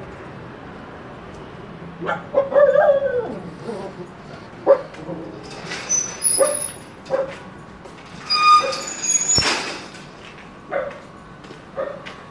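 A small dog barking and yipping in short bursts, starting about two seconds in and repeating on and off, about ten times.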